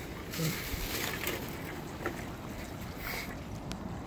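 Steady wind and water noise on an open phone microphone, with a few faint knocks and a brief low murmur of a voice about half a second in.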